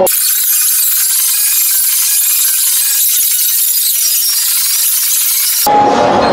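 Loud, steady, high-pitched static hiss with no low end, cutting in suddenly and stopping abruptly near the end: an audio glitch in the recording that blots out the ringside sound.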